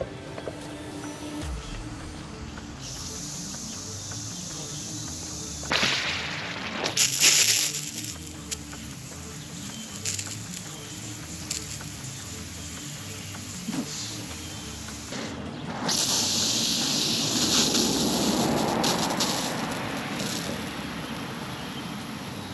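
Lawn irrigation sprinkler heads spraying water: a steady hiss that swells louder about six seconds in and again from about sixteen to twenty seconds.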